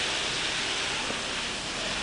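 Water spraying steadily from a garden hose onto plants: an even, unbroken hiss.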